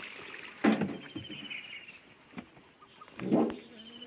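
Two loud water splashes about two and a half seconds apart as a wooden country boat is worked through the river, each lasting under half a second.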